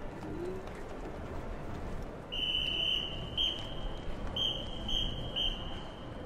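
A marching band's whistle sounding a steady high note: one long blast, a short one, then three quick short blasts, the drum major's count-off signal to the band.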